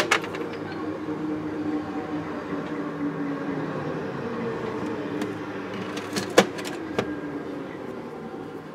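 A small motor running with a steady hum whose pitch wavers slightly, with sharp clicks at the start and two more about six and seven seconds in.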